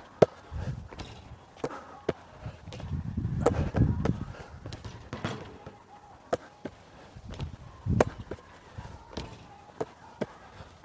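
Basketball thudding on a hard outdoor court and knocking against the backboard and rim during layups: a string of irregular sharp knocks, roughly a second apart.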